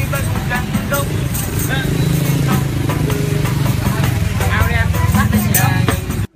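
A man singing along to a shaken tambourine, whose jingles cut through as sharp, irregular metallic hits, over a loud, noisy recording.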